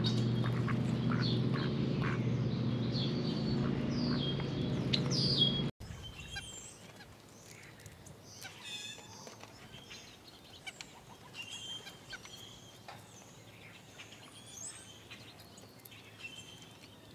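Wild backyard birds calling at feeders: high chirps and short downward-sweeping squeaky calls over a steady low drone. About six seconds in, the sound cuts abruptly to a quieter stretch of scattered short chirps and faint clicks.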